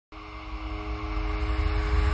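Cinematic logo-intro sound: a deep rumble under a few long held notes, swelling steadily louder.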